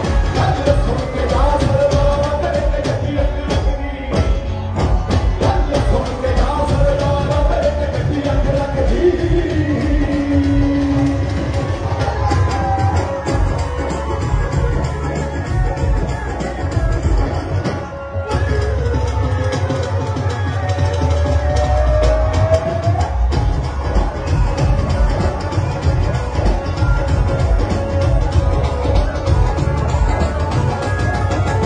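Live amplified Punjabi pop music with a singer and a heavy drum beat, played through PA speakers in a large auditorium, with a cheering crowd underneath.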